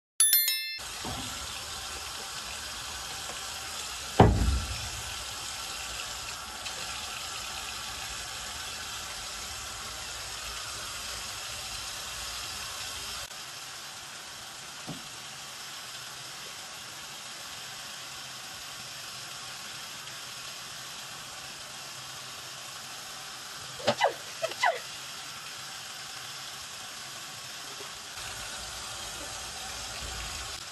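Water running steadily from a faucet into a concrete utility sink. A short ding sounds at the very start, there is a loud thump about four seconds in, and a few short sharp sounds come around 24 seconds in.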